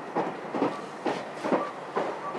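Wheels of a JR West 283 series "Ocean Arrow" electric train clacking over rail joints at speed, heard from inside the carriage: an even rhythm of about two to three clacks a second over the steady running noise.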